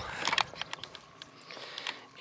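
A few light clicks and rustles of handling and movement near the microphone, over a faint outdoor background.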